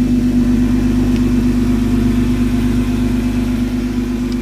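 Jeep Wrangler JKU engine idling with a steady, unchanging hum.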